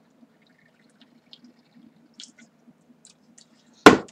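A man drinking from a plastic bottle: faint gulps and small liquid sounds. Near the end there is a single sudden loud knock.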